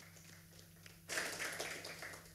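Brief, thin applause in a small hall: a few scattered claps, then a short burst of clapping about a second in that fades near the end.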